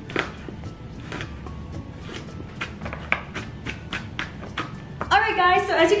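Chef's knife chopping garlic cloves on a plastic cutting board: a run of quick, even knocks, about four a second, that stops about five seconds in.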